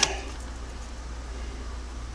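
Room tone: a steady low hum under faint background noise, with no distinct event.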